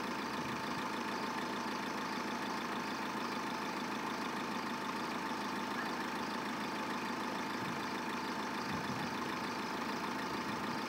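A vehicle engine idling steadily, an even hum with a faint steady tone and no change in speed.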